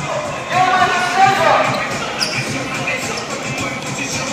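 Basketballs bouncing on an indoor court, a run of dull thumps, with a person's voice calling out over them from about half a second to two seconds in.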